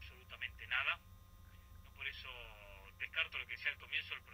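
Speech heard over a telephone line, thin and narrow-sounding, with a steady low hum underneath.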